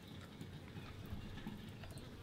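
Faint background noise with a few faint ticks.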